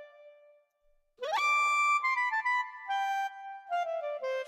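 Yamaha Tyros3 keyboard's Super Articulation clarinet voice: after a note fades out, a note sweeps up about an octave in a smooth glissando, the effect of the ART 2 articulation button, then a short phrase of notes steps downward.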